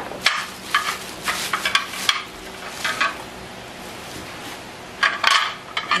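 Clear plastic bag crinkling as spare panini grill plates are unwrapped by hand, in short crackly bursts mostly in the first two seconds and again about five seconds in.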